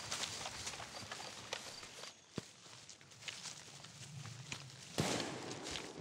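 Footsteps of two people running through long grass, rustling and thudding, fading over the first two seconds; a single sharp click a little past two seconds in, and louder rustling from about five seconds in.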